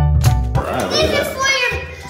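Background music with a steady beat, joined about half a second in by children's excited voices talking over it.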